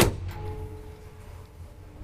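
A single loud clunk as a floor button is pressed in an old Kone traction elevator car, then a steady low hum with faint steady tones as the elevator machinery runs.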